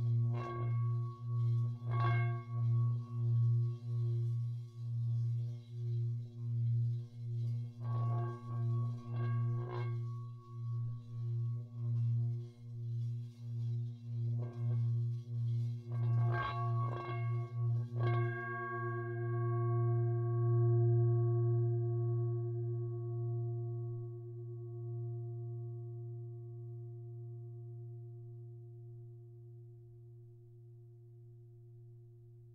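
Tibetan singing bowls ringing, with a low hum that pulses about twice a second and higher ringing overtones. Several bowls are struck, in a cluster about eight seconds in and another a little past the middle. After the last strikes the tones ring on steadily and slowly fade away.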